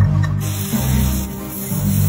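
Background music led by low bowed strings, with a steady hiss over it from about half a second in.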